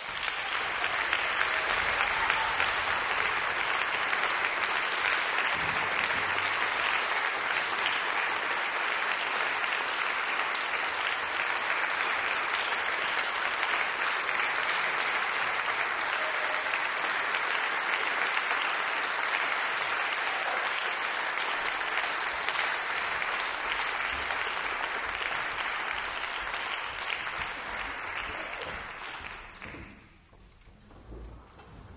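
Audience applauding steadily for nearly half a minute, the clapping dying away near the end.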